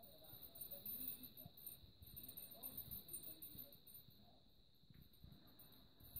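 Faint light jingling of hanging plastic and bead cage toys as a green-cheeked conure plays with them. A steady high-pitched whine runs underneath.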